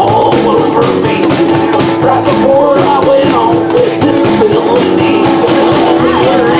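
Live rock band playing: bass guitar, acoustic guitar and harmonica over two cajons keeping a steady beat, with one note held for a few seconds in the middle.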